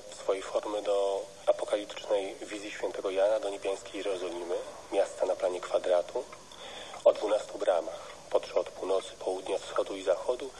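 Continuous speech from one voice, with the thin, narrow sound of a radio broadcast.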